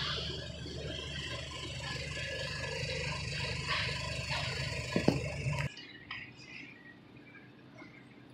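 Steady supermarket background noise with a low hum, broken by a sharp knock about five seconds in; the noise drops away suddenly just before six seconds, leaving a much quieter background.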